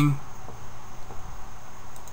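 Background hiss with a faint steady high-pitched whine.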